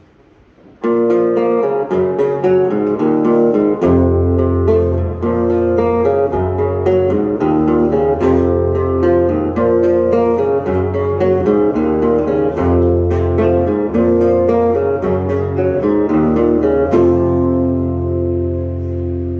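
Two acoustic guitars playing a song's instrumental intro, starting suddenly about a second in. Deeper notes join at about four seconds.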